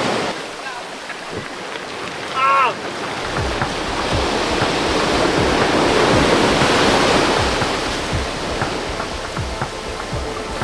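Ocean surf breaking and washing up a black sand and pebble beach, swelling to its loudest midway. A short call is heard about two and a half seconds in. From about three seconds in, a low regular thump comes about twice a second.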